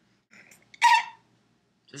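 A single short, high-pitched vocal cry from a person, just under a second in, among otherwise quiet room sound.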